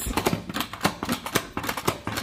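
Pump-style salad spinner being worked by hand, spinning wet lettuce: a quick, uneven run of plastic clicks, several a second.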